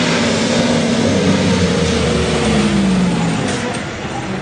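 Heavy truck driving past close by on a dirt road, loud engine and tyre noise, the engine note falling in pitch about halfway through as it goes by.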